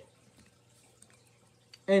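Near silence: room tone with a faint steady low hum, then narration resumes near the end.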